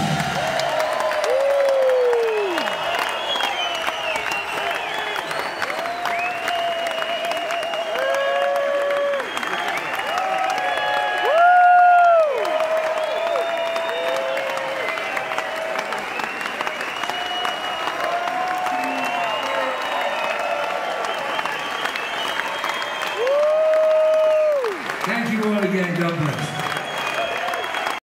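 Concert audience applauding and cheering, with whoops and shouts over the clapping; the loudest whoops come about twelve and twenty-four seconds in.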